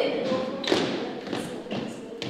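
A few dull thumps and taps, about two a second, growing fainter toward the end.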